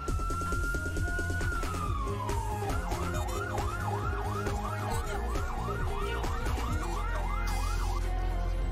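Fire truck siren heard from inside the cab. A long wail rises, then falls away about two seconds in. It switches to a rapid yelp of about three sweeps a second, over a steady low rumble.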